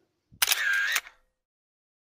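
A single short sound effect, about half a second long, starting sharply a little way in, with a brief tone in it that rises and falls. It is set in silence between two stretches of narration.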